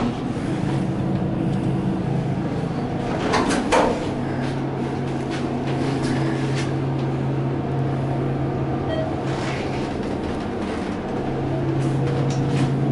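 Hydraulic elevator car: doors sliding shut with a short clunk about three to four seconds in, and a steady low hum as the car starts and travels.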